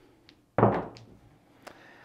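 Craps dice thrown onto a felt table: one loud thump about half a second in, then a small click near the end.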